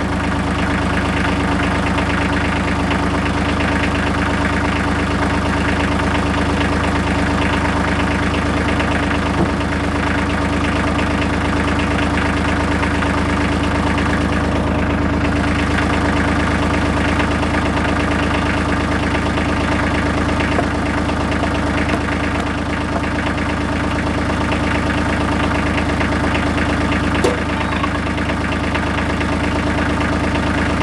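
A 1986 Ford farm tractor's engine idling steadily. Two light knocks sound over it, a faint one about nine seconds in and a sharper one near the end.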